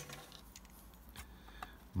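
Faint, light clicks of handling as a metal pencil is picked up and brought to the plastic cobble sheets, a few small ticks in the second half.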